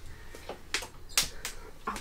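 Caravan bathroom door being unlatched and swung open: a few sharp clicks and knocks from the latch and handle, spread about half a second apart.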